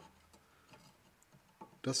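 Near silence, with a few faint light ticks of a screwdriver working at the handbrake cable's retaining clip on a rear brake caliper. A word of speech comes in at the very end.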